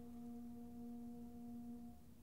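A single soft note held steady by the orchestra, one unchanging pitch that ends right at the close.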